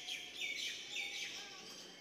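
Birds chirping: a quick run of short, high chirps, most of them falling in pitch, in the first second and a half, growing fainter toward the end.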